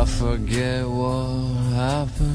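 Music from a slow indie band song: a wavering, gliding melody line held over sustained low notes.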